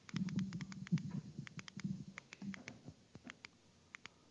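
Rapid faint clicks, about five a second, of slide-advance buttons being pressed to page quickly through presentation slides, over a faint low murmur in the first three seconds.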